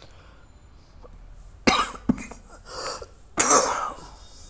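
A person coughing: two loud, sharp coughs, the second near the end, with smaller throat noises between them.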